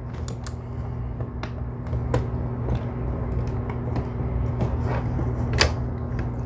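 The plastic clamshell housing of a Ryobi P737 battery-powered handheld air compressor being pried apart by hand. Scattered clicks and creaks come from the seam and clips as they give way, the sharpest about two seconds in and again near the end.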